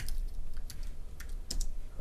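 Typing on a computer keyboard: several irregularly spaced key clicks.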